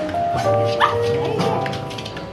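Background music, with a Bichon Frise giving a short, high yip about a second in as it greets a person excitedly.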